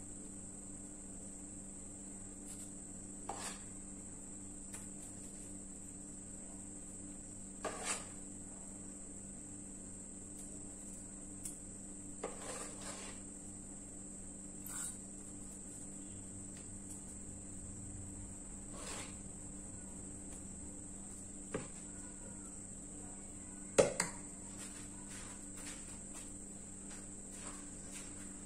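A steel spoon knocking and scraping now and then against a metal pot while thick cooked mango pulp is scooped out, with the sharpest knock a few seconds before the end. Under it runs a steady low hum and a high steady whine.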